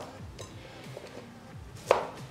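Knife chopping cauliflower, the blade knocking on the cutting surface: a faint knock about half a second in and a sharp knock near the end, over quiet background music.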